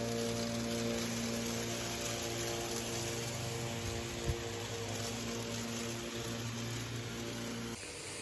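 Homemade paddy threshing machine built from old water-pump and fan motors, its electric motor running with a steady, even hum. There is a light tick about four seconds in.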